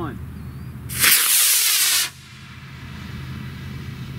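Estes Supernova model rocket's solid-fuel motor igniting and burning: a loud rushing hiss starting about a second in, lasting about a second, and cutting off sharply at burnout.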